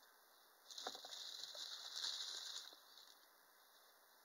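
Thin clear plastic bag crinkling and rustling for about two seconds, beginning with a small click about a second in, as hands work a vinyl doll part out of its wrapping.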